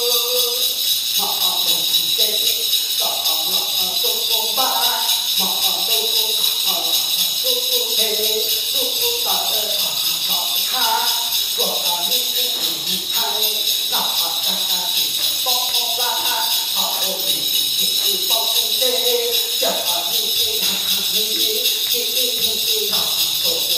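A Hmong shaman's metal ritual rattle and bells jingling in an unbroken steady shake, under the shaman's own chanting in short sung phrases.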